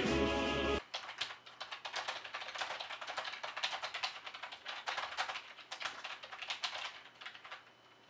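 Music breaks off abruptly about a second in, followed by fast, irregular typing on a computer keyboard, a rapid run of key clicks that stops near the end.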